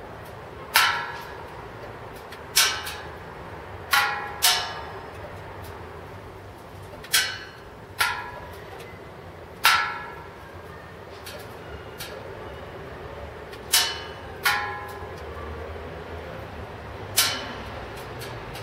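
About nine sharp strikes at uneven intervals, each ringing briefly before it dies away, over a steady low hum.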